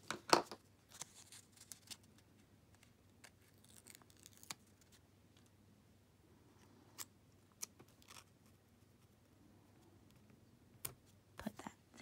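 A paper sticker label being handled, peeled from its backing and pressed onto a planner page: faint, scattered small clicks and rustles of paper, the loudest just after the start.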